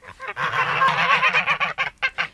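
White domestic geese honking together in a rapid, overlapping chatter of calls.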